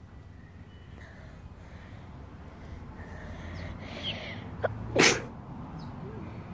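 A person sneezing once, loudly and close to the microphone, about five seconds in. It is preceded by faint high chirps and a short sharp click.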